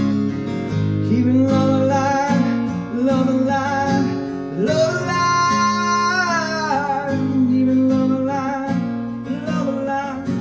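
Acoustic guitar strummed with a man singing over it, holding one long note about five seconds in before sliding down.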